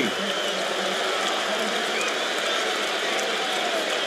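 Basketball arena crowd cheering: a steady wash of noise from many voices after a home-team basket.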